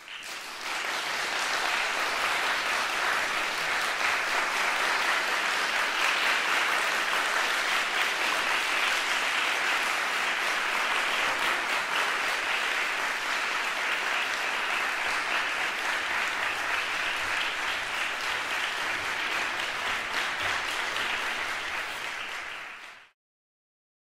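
An audience applauding steadily, starting and reaching full strength within about a second. It drops slightly and then cuts off suddenly near the end.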